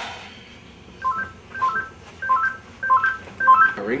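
Cell phone ringtone: a short electronic phrase of a few beeping notes, repeated five times, starting about a second in.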